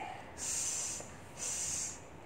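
A woman hissing "sss" twice, each about half a second long, sounding out the letter S like a snake's hiss.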